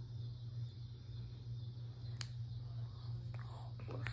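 Small plastic Kinder Joy toy pieces handled and pressed together in the fingers, with one sharp click about two seconds in, over a steady low hum.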